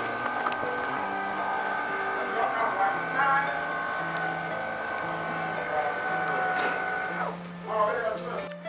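Small electric motor of a clap-controlled curtain mechanism running as it draws the curtain, a steady whine that stops about seven seconds in when the curtain reaches its position.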